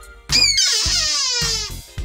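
A small handheld novelty noisemaker sounding once: a squeal that slides steadily down in pitch for about a second and a half, then stops.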